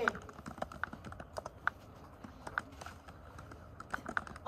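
Computer keyboard typing: irregular, scattered key clicks in a quiet room.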